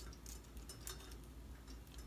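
Faint, light clicks of a metal chandelier chain being hooked onto the loop of the hanging bolt: a few small scattered ticks over a low room hum.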